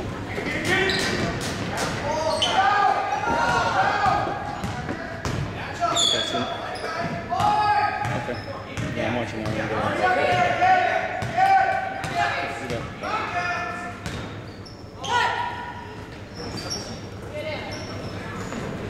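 Basketball game in a gymnasium: the ball bouncing on the hardwood floor amid footfalls, with raised voices of players, coaches and spectators calling out, unintelligible and echoing in the hall.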